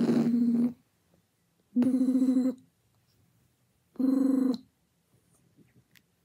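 Three short, fluttering, buzzing hums, each under a second long and held on one steady pitch, about two seconds apart.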